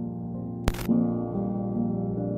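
Soft ambient background music with sustained low tones, and a single sharp click about two-thirds of a second in.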